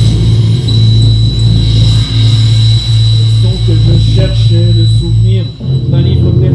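Improvised live music: a loud low drone that pulses with short breaks, joined about four seconds in by a violin playing wavering, sliding notes. The sound dips briefly just before the end.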